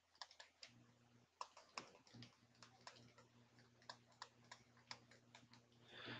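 Faint, irregular light taps and clicks of a stylus on a tablet computer screen while handwriting is written, over a faint low hum that comes in about half a second in.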